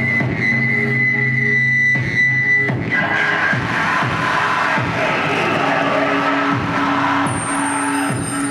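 Live harsh noise electronics from a table of effects pedals: a steady high feedback whine over a low hum for the first couple of seconds, then a dense, distorted wash, with a voice fed through the effects from a microphone. Near the end a run of quick high chirps comes in.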